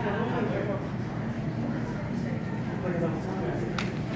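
Indistinct background voices of people talking in an indoor public space, with a single sharp click near the end.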